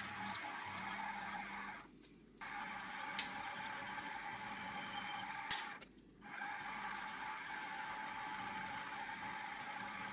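Mini milling machine running, its spindle drilling and boring a hole in an aluminium block: a steady motor whine with cutting noise, broken off briefly twice, at about two and six seconds in.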